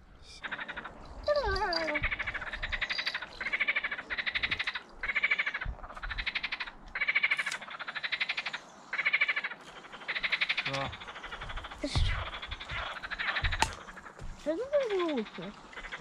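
Frogs croaking in chorus: a steady run of rattling calls, each under a second long, following one after another.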